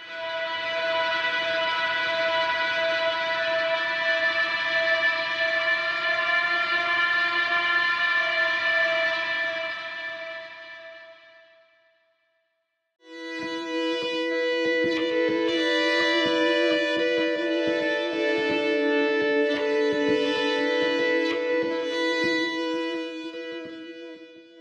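Sampled electric guitar in the 'chaos' distortion setting of Spitfire's Ambient Guitars library, played from a keyboard. A held, distorted chord rings and fades out about halfway through. After a moment's silence a second held, chaotic sound starts, with rapid crackling stutters running through its sustained tones.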